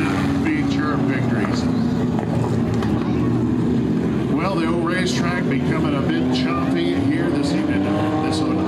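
A pack of four-cylinder dirt track race cars running together, several engines droning steadily at once with overlapping, wavering pitches.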